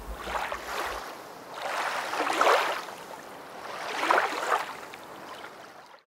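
Waves sound effect: three swelling washes of surf-like noise, each about a second long and roughly 1.7 s apart, the last one fading out near the end.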